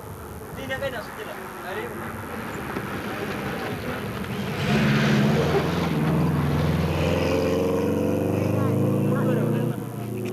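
Subaru RX Turbo rally car with a turbocharged flat-four engine coming up fast on a dirt rally stage and passing close by. The engine sound grows louder to a peak about halfway through, then runs on hard at high revs as the car goes away, and breaks off sharply just before the end.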